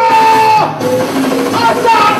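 Live vocalist singing into a microphone over a backing track played loud through a club PA: a long held note for the first half second or so, then shorter sung phrases.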